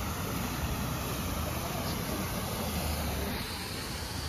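Water rushing over a small concrete check dam's spillway and down a rocky stream bed: a steady, even rushing noise with a low rumble underneath.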